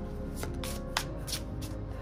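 A deck of Lenormand cards being shuffled by hand: several crisp card flicks about half a second apart. Soft background music with sustained tones plays underneath.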